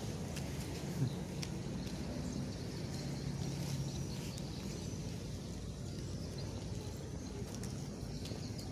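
Steady outdoor background noise with a faint low hum, and one short sharp knock about a second in.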